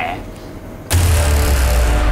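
Dramatic TV-drama score sting: a sudden loud hit about a second in, which opens into a sustained low rumbling drone with held tones above it.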